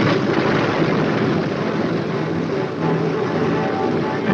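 B-25 Mitchell bomber's radial engine starting up as its propeller spins up: a sharp burst at the start, then steady, rough running.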